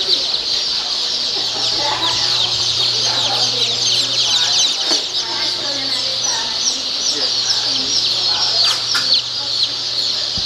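Dense chorus of many newly hatched chicks peeping: a constant overlapping stream of short, high-pitched, downward-sliding cheeps, over a steady low hum.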